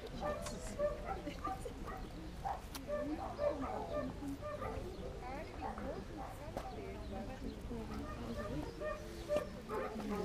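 Puppies barking now and then over the indistinct chatter of several people.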